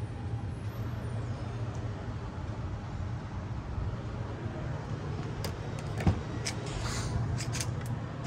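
A steady low rumble, with a single sharp knock about six seconds in and a run of short clicks near the end, like a handheld phone being moved about.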